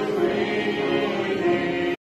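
A group of voices singing a hymn together, holding long sustained notes.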